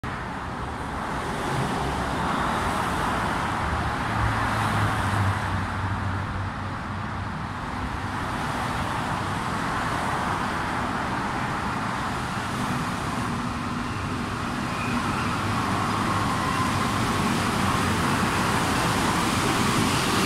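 Rubber-tyred NS-93 metro train approaching through the station, a steady rolling rumble that grows louder towards the end as it nears.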